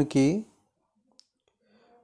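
A voice dictating a Hindi legal text slowly, word by word: one word at the start, then a pause broken only by a single faint click about a second in.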